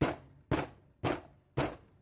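Four sharp knocks about half a second apart, each dying away quickly: soap-making gear, such as the filled loaf mould or a utensil, knocked against the work surface.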